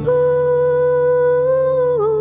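Female vocalist holding one long, steady sung note over a sustained acoustic guitar chord. The note lifts slightly near the end, then breaks off.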